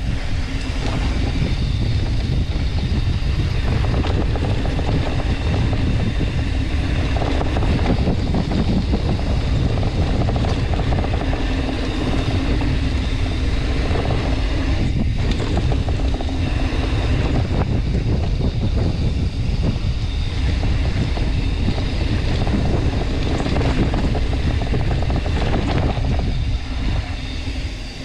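Steady wind rush on the camera microphone with the rumble of mountain-bike tyres rolling fast over a dirt trail.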